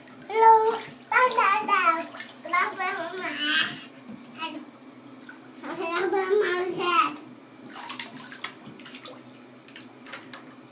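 Young child's high voice babbling in a bathtub in two spells, then light splashing with scattered clicks and taps of water and plastic bath toys over the last few seconds.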